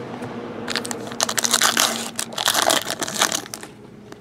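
Foil-plastic wrapper of a hockey card pack crinkling and crackling as it is handled and torn open, a dense crackle from about a second in until near the end.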